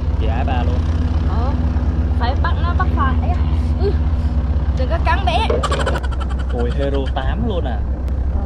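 Two people talking quietly over a steady low mechanical hum. A quick run of sharp clicks comes about six seconds in.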